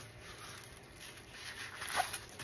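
Faint rustling of paper and plastic film as diamond-painting canvases are handled and one is flipped over, louder near the end.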